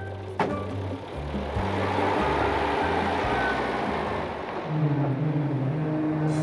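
Background music with sustained low notes, over a car pulling away: a single sharp knock about half a second in, then a few seconds of engine and tyre noise that fades.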